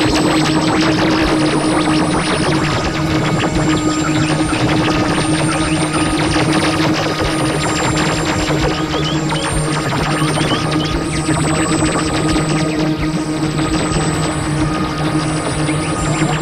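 Experimental electronic synthesizer music: a dense, noisy texture over a steady low two-note drone, with a few short high chirps about halfway through.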